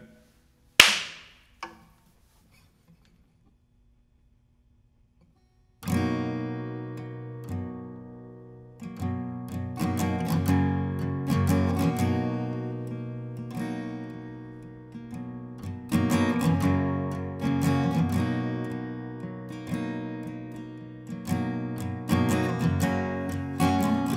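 A single sharp hand clap about a second in, then a few seconds of near silence, then a capoed steel-string acoustic guitar starting an instrumental intro about six seconds in, picked chords ringing out over one another.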